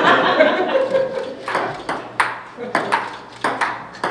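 Ping-pong ball knocking against paddles and the table, a run of sharp clicks about two or three a second through the second half.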